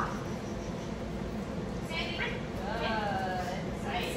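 Dog whining: a short high whine about two seconds in, then a longer one that slides slightly down in pitch.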